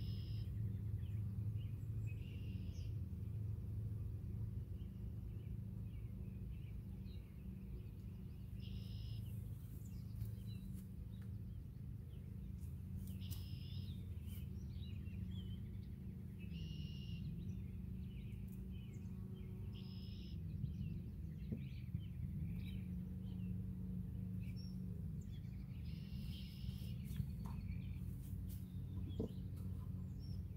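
Steady low hum of honeybees around an open hive, the pitch wavering now and then as bees fly close. Songbirds chirp in short calls every few seconds, and there are a few light knocks as the wooden hive boxes are handled.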